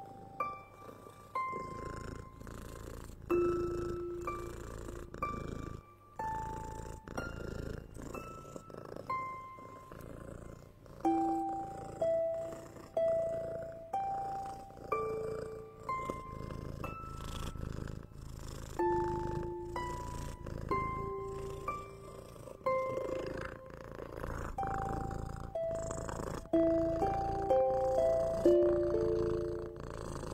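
A cat purring, a steady low rumble, under a slow, calming melody of soft plucked notes played one at a time, about one a second.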